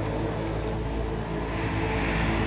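A car engine running steadily with a deep rumble, mixed with a music soundtrack.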